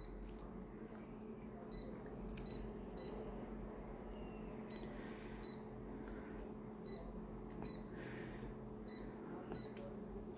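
Konica Minolta copier's touchscreen giving short high beeps, about ten at irregular intervals, as its colour-adjustment settings are tapped, under a low steady hum.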